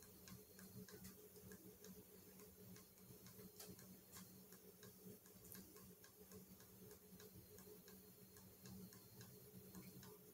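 Near silence: faint, regular ticking, about three ticks a second, over a low steady hum.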